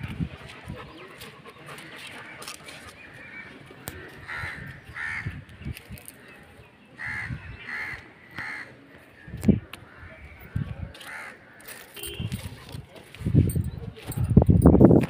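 A bird calling outdoors in short, repeated calls, several in quick succession through the middle and one more later, with a few low bumps, the loudest near the end.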